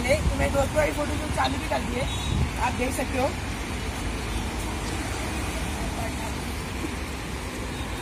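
Steady rumble of road traffic passing close by, with voices over it for the first three seconds or so and the traffic alone after.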